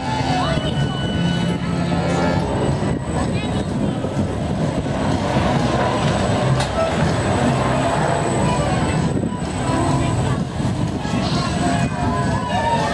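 An amusement ride in motion, its machinery giving a loud, steady mechanical rumble, with people's voices over it.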